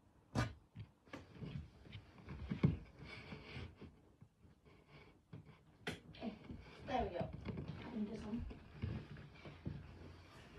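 Someone moving about under a model railway baseboard: scattered knocks and bumps with rustling, and a few faint muttered words about two-thirds of the way through.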